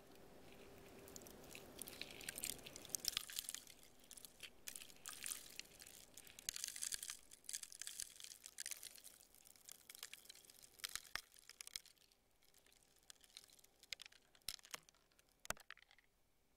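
Faint, irregular clicking and crackling, thick in clusters and sparser toward the end, with a low steady hum that fades out in the first few seconds.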